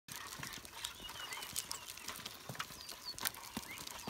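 A child's balance bike rolling over rough asphalt with a steady hiss, along with irregular scuffing taps like footsteps and a few short, high bird chirps.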